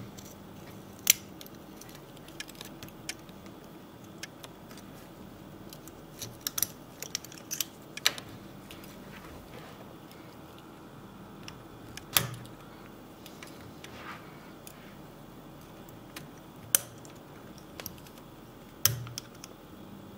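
Scattered sharp clicks and scrapes of a steel pocket-knife tool prying a circuit board out of a snap-fit plastic housing. Single loud clicks come about a second in, around the middle and near the end, with a quick cluster of small ticks in between.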